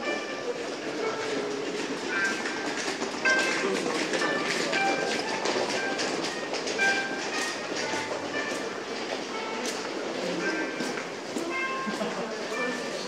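Ambience of a busy underground shopping walkway: a steady rumbling background noise with footsteps, indistinct voices and faint snatches of background music, heard in a reverberant hall.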